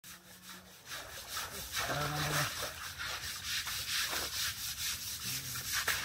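Men scrubbing an Asian elephant's hide by hand: rapid, repeated rasping strokes against the rough, wrinkled skin, starting quietly and growing louder about a second in. Short calls from the men break in twice.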